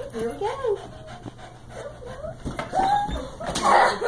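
A dog whining in short whimpers that rise and fall in pitch, excited by a ball game.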